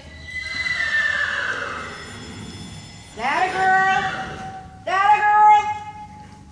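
Horse whinnying: a long call falling in pitch at the start, then two more drawn-out calls from about three seconds in.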